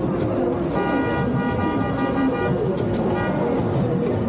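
A vehicle horn honks, one held blast of about a second and a half, then a short second toot a little before the end, over steady crowd chatter.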